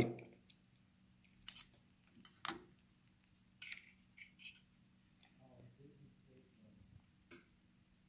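Several faint, scattered metallic clicks and taps from a Bridgeport mill head's quill-feed trip mechanism being worked by hand. The upper feed trip is not quite disengaging. A faint steady hum runs underneath.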